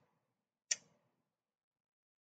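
A single short, sharp click about two-thirds of a second in; otherwise near silence.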